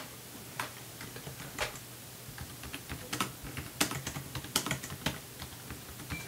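Typing on a computer keyboard: scattered key clicks, sparse at first and coming more often in the second half.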